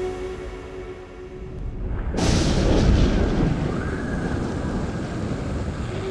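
Thunder sound effect: a sudden crash about two seconds in that rolls on as a heavy rumble with a hiss like rain, following the fading tail of an electronic track.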